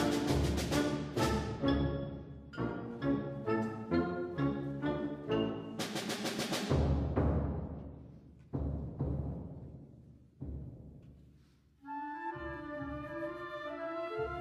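Wind ensemble playing a loud passage of accented brass chords punctuated by timpani strokes, with a big crash about six seconds in. Two lone drum strokes then die away almost to silence, and soft held chords with a wavering melody enter near the end.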